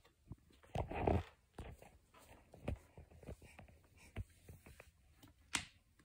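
A Pomeranian growling, with the loudest stretch about a second in, while gripping a rubber toy in its jaws. Small clicks and gnawing sounds of teeth on the rubber run through, and there is one sharp click near the end.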